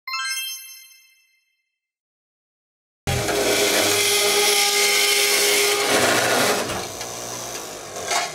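A single chime that rings and fades over about a second, then silence. About three seconds in, a cold saw starts cutting square steel tubing: a loud, steady whine over a harsh grinding hiss, dropping off sharply about six seconds in and running on more quietly.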